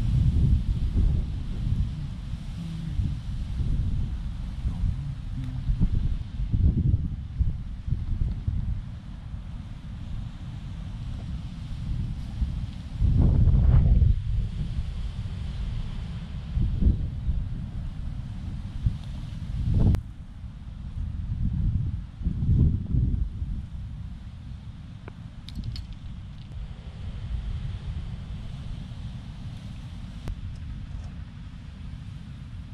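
Wind buffeting the microphone: a low rumble that rises and falls in gusts, loudest about halfway through.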